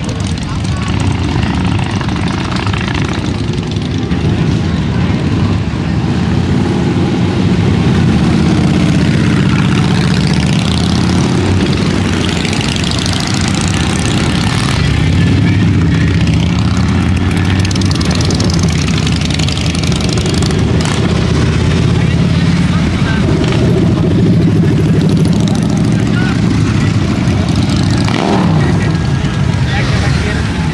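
A procession of motorcycles, mostly Harley-Davidson V-twins, riding past one after another, their engines rumbling steadily and rising and falling in pitch as riders rev and go by. Crowd chatter runs underneath.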